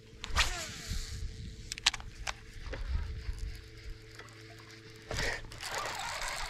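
A cast with a baitcasting rod and reel: a swish as the line goes out and the reel's spool whirring down in pitch as the lure flies, over a steady low hum from the boat's trolling motor. A few light clicks follow, and a brief louder noise comes about five seconds in.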